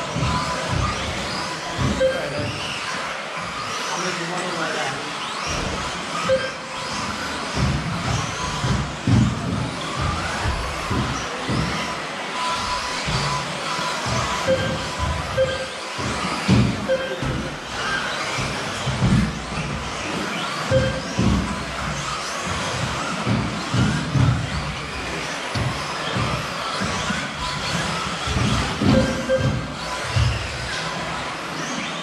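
Indoor RC race in progress: 1/10 scale 2WD electric off-road buggies running on an astroturf track, heard in a hall along with short repeated beeps and background music.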